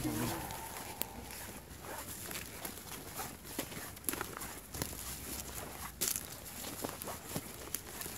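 Footsteps of a person walking through leaves and brush in the woods, an irregular run of crunches and snaps.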